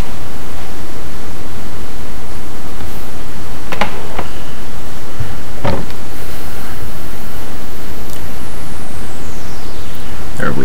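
Loud, steady hiss of the recording's own microphone noise, with a few brief faint sounds near the middle.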